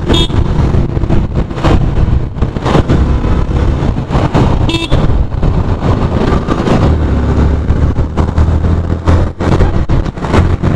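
Yamaha FZ-V3 motorcycle's single-cylinder engine running on the move, with wind noise on the mic and road traffic around it. Two short horn toots sound, one right at the start and one about five seconds in.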